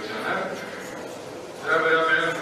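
Only speech: a man talking into a microphone.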